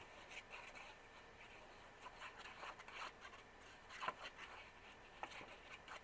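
Faint rubbing and scratching of a liquid glue bottle's tip drawn across a strip of scrapbook paper, with a couple of light taps of paper handling about four and five seconds in.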